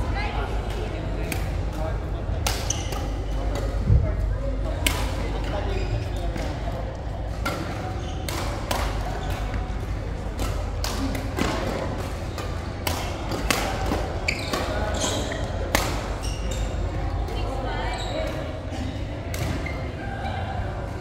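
Badminton rackets striking a shuttlecock in rallies: sharp hits at irregular intervals, roughly every one to two seconds. A heavier thump comes about four seconds in.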